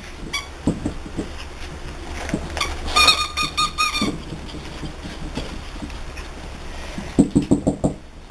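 French bulldog puppies at play, with a quick run of short, high squeaks about three seconds in and a rapid string of short, lower yaps near the end as two puppies wrestle.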